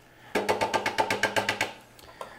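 Plastic food-processor bowl rapped quickly against the plate rim, about a dozen even knocks in just over a second, knocking the last of the cornflake crumbs out.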